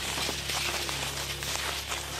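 Steps crunching through snow, an irregular stream of crackling crunches, over a low steady rumble of handling noise on the microphone.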